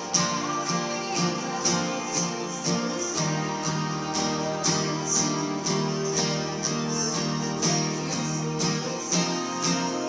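Steel-string acoustic guitar, capoed at the third fret, strummed in a steady rhythmic pattern of chords, changing chord about three seconds in and again near the end.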